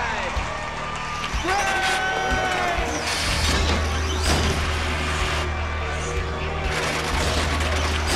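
Spectators shouting and whooping over background music with a steady deep bass, with a few sharp knocks about three to four seconds in.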